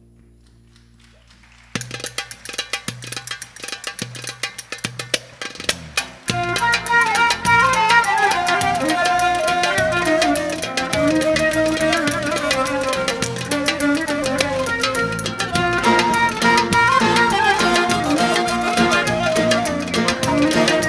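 Turkish folk ensemble starting a Konya-region türkü. About two seconds in, a hand-percussion rhythm on frame drums begins. About six seconds in, the full band with bağlama and bowed strings comes in loudly with a flowing melody.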